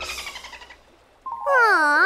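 A woman's drawn-out, disappointed "aww" starts just over a second in, its pitch dipping low and then rising back. It is her reaction to being turned away.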